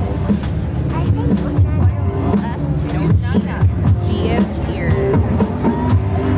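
Music with a steady beat playing over a public-address loudspeaker, with people's voices talking under it.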